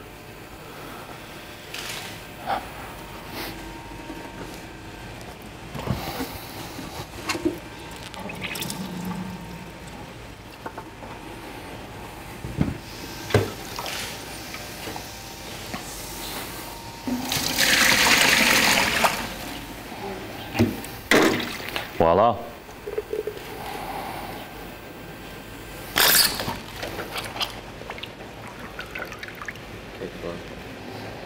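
Liquid running from a draft beer faucet into a pitcher as beer pushes the rinse water out of the cleaned line, with scattered clicks and knocks. About seventeen seconds in comes a loud hiss lasting about two seconds, followed by a few short sharp spurts.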